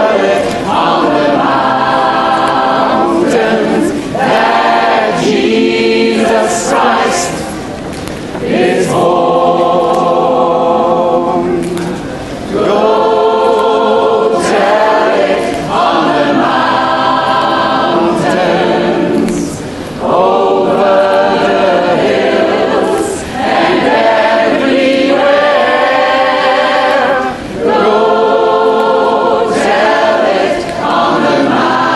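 Gospel choir singing a cappella, many voices in harmony, in held phrases of a few seconds with brief breaks between them.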